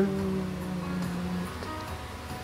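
A man's singing voice holds one note for about a second and a half before stopping, over acoustic guitar music that carries on after it.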